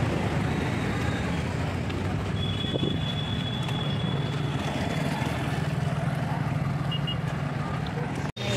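Street traffic: a steady mix of engine hum and road noise from passing scooters and light vehicles. A thin high whine is held for a couple of seconds in the middle.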